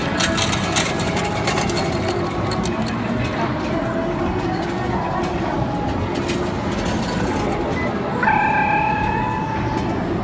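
Arcade din: a mix of background voices and electronic game music and sounds. A run of sharp clicks comes in the first second or so, and a steady electronic tone from about eight seconds in.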